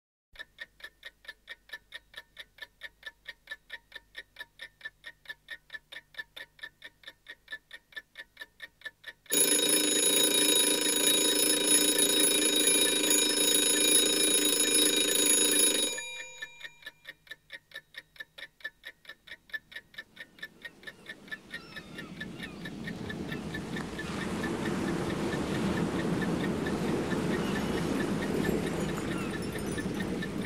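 A clock ticking rapidly and evenly, then an alarm clock bell ringing loudly for about seven seconds and cutting off abruptly, after which the ticking returns. From about two-thirds of the way through, a swelling wash of sound fades in over it.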